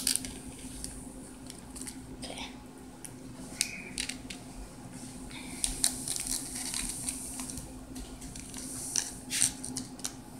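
Scattered rustles, clicks and light taps of sand-art supplies being handled: paper and plastic packets, with a steady low hum underneath.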